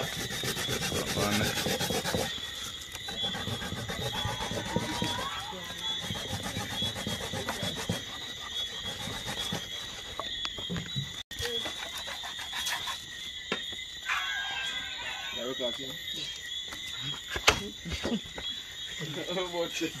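A kitchen knife sawing and scraping through raw pork on a plastic bag, over the steady high chirring of night insects. A sharp click comes about 17 seconds in.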